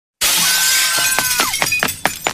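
Edited intro sound effect: a sudden loud rush of hiss-like noise with a thin high tone that slides down about one and a half seconds in, then a run of sharp crackling clicks.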